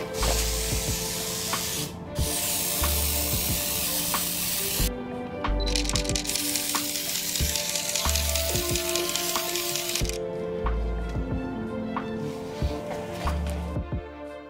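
Atmosphere Aerosol haze spray can hissing in three long bursts of about two, three and four and a half seconds, then a softer, shorter burst near the end.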